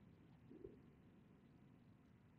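Near silence: room tone, with one faint short low sound a little over half a second in.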